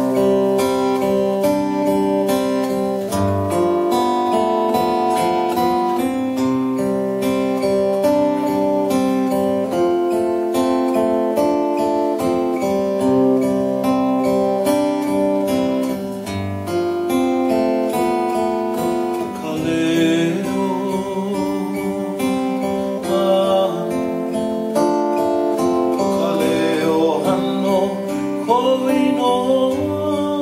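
Solo acoustic guitar playing a song intro with a steady strummed rhythm; about twenty seconds in, a man's voice begins singing over it.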